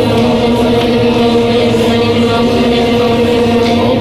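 A group of children chanting Buddhist prayers in unison, a steady drone held on one pitch.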